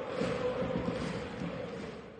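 Steady stadium crowd noise: a continuous din of many voices from the stands, without a sharp rise or break.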